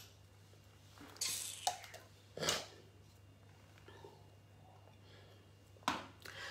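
A pause in a woman's talk: mostly faint room tone, with two soft breath sounds from her, one about a second in and a sharper intake of breath about two and a half seconds in.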